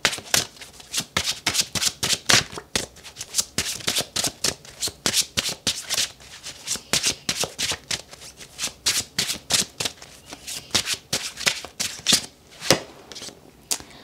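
A tarot deck being shuffled in the hands, a steady run of short card slaps about four a second that thins out near the end.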